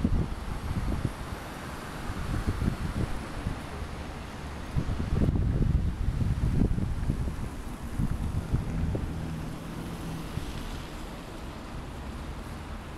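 Wind buffeting the microphone in irregular gusts, heaviest about five to seven seconds in, over the steady noise of city street traffic.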